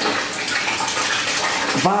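Water pouring from a tap into a bathtub, a steady rush of splashing as the tub fills.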